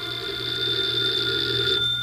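Telephone bell ringing in one long, steady ring that stops shortly before the end.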